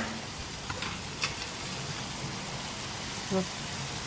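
Spiced masala gravy sizzling steadily in oil in a kadhai on a gas flame, with a couple of light clicks in the first second.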